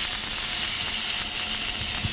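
Langoustines sizzling in olive oil in a frying pan, a steady hiss, as they finish cooking and are lifted out.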